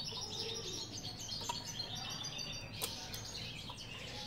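Small songbirds chirping and twittering, a busy run of short high calls. A single light click sounds a little under three seconds in as the metal-barred cage is handled.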